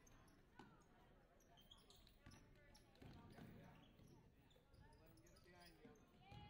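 Faint basketball game sounds in a gym: a basketball bouncing on the hardwood court, with distant voices of players and spectators.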